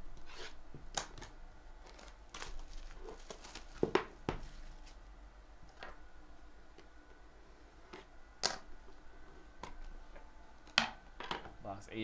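Plastic shrink wrap crinkling and a hard card box being handled and opened, with scattered rustles and a few sharp taps and clicks.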